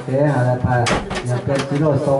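A person talking, with a sharp knock just under a second in and a few fainter knocks shortly after.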